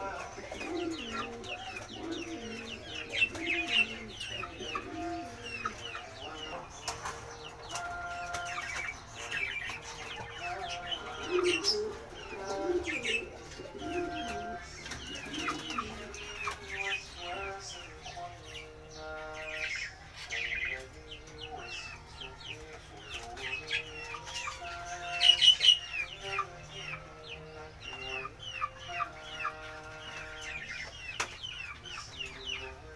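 Chickens clucking, with many short high chirps throughout and a louder flurry of calls late on.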